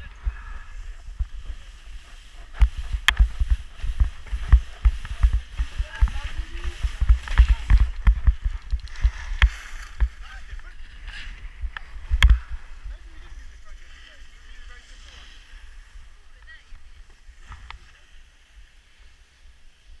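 Skis scraping and chattering over packed snow on a downhill run, with a dense string of low thuds and knocks as the skis ride over bumps, the biggest a little past halfway. It grows quieter and steadier in the last third.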